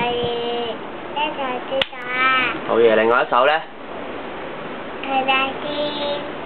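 A toddler's voice reciting a Chinese poem in drawn-out, sing-song syllables, with a short click about two seconds in.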